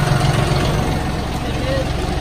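John Deere utility tractor's diesel engine idling steadily, a low even running hum.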